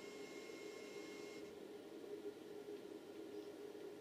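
Faint steady hiss from the RF-modulated TV audio, with thin high whining tones that cut off about a second and a half in. This is the modulator's high-frequency noise dropping out as a 4.7 nF capacitor is pressed across the audio input to act as a low-pass filter, which either cures the noise or has shorted out the audio.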